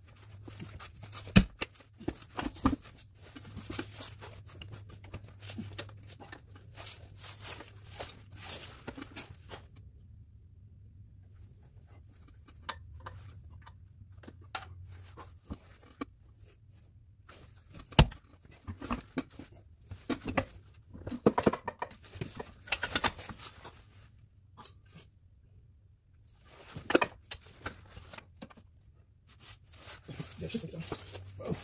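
Knocks, clanks and rustling of gloved hands and metal parts as a Getrag manual gearbox is worked into place under a car on a floor jack. The knocks come irregularly, with a few loud sharp ones and a busy run of them past the middle, over a faint steady low hum.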